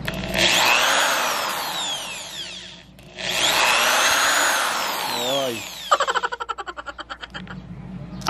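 Electric drill boring through a plastic bottle cap held on a wooden block, in two runs of about two and a half seconds each, the motor's whine rising and falling in pitch. A quick rattle of rapid ticks follows near the end.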